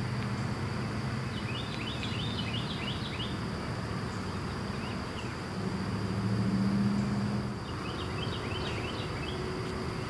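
Outdoor ambience: a steady high drone of insects, with two brief bouts of bird chirping and a low hum that swells about six seconds in.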